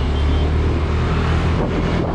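Motor scooter engine running while riding, with wind noise on the microphone. The deep engine hum weakens a little near the end.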